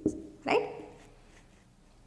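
A woman saying one short word, "right", about half a second in, then near silence with faint room tone.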